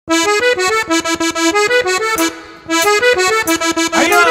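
Accordion playing a quick cumbia introduction of short, detached notes, breaking off for a moment about halfway before picking up again.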